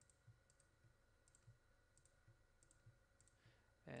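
Faint computer mouse clicks, several single clicks at irregular spacing, against near-silent room tone.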